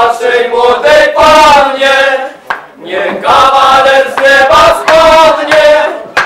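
A group of carollers singing a carol together, in two sung phrases with a short break about two and a half seconds in.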